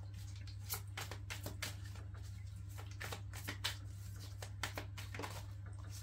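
A tarot deck being shuffled by hand: irregular soft clicks and flicks of card edges, over a steady low hum.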